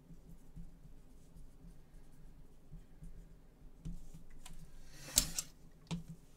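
Gloved hands handling trading cards and plastic card holders on a table: a few light knocks and clicks, then a short louder scrape or rustle about five seconds in, over a faint steady hum.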